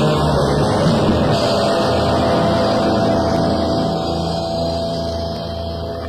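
A rock band's electric guitar and bass hold sustained, ringing notes as the song winds down. The level slowly falls.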